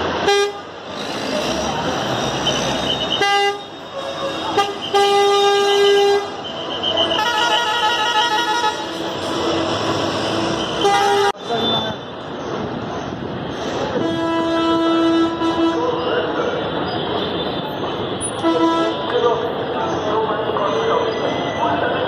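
Vehicle horns, bus horns among them, honking again and again: short toots and several blasts held a second or two, with one horn pulsing rapidly for a few seconds near the middle. Steady crowd chatter and traffic noise underneath.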